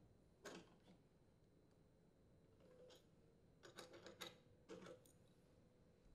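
Near silence with a few faint clicks of a wrench working the ignition coil's mounting bolt and post on a Honda small engine: one about half a second in, a small cluster near four seconds and another near five.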